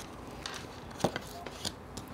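Tarot cards being handled and laid down on a table: a few quiet taps and slides, about half a second apart.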